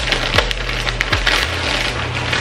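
Clear plastic clothing bag crinkling and rustling as it is pulled open and a folded garment is drawn out of it, a dense run of small crackles.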